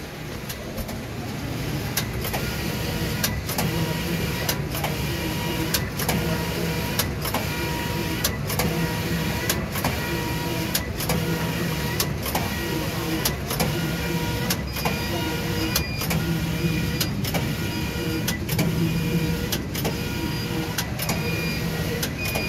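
Tongxing TX280TI 18-gauge computerized flat knitting machine making collars: its carriage shuttles back and forth across the needle bed in a regular cycle of about one to one and a half seconds, a steady mechanical whir with high whining tones and sharp clicks.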